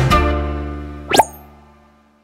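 Short logo jingle: its final chord rings out and fades away, and a quick upward-gliding sound effect cuts in a little past a second in.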